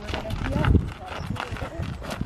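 A horse's hooves walking on a gravel lane, a steady series of crunching steps, with people's footsteps on the gravel alongside. A low thump comes a little under a second in.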